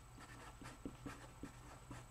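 Marker pen writing on paper, a series of faint, short scratching strokes.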